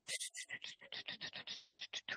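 Faint, quick scratching strokes of a stylus on a pen tablet as tick marks are drawn, about six or seven strokes a second.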